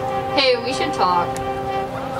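Marching band brass holding a loud sustained chord. Short high vocal cries break in over it about half a second in and again about a second in.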